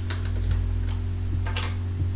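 Steady low electrical hum, with a few faint clicks and a short hiss about one and a half seconds in.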